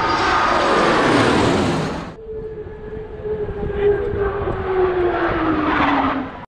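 Jet aircraft flying past: a loud, even rush of jet engine noise that cuts off about two seconds in. Then a quieter engine whine follows whose pitch slowly falls as a plane goes by.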